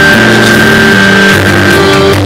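Loud live band music with a bowed violin: low bass notes move every half second or so under a high held note, which ends near the end.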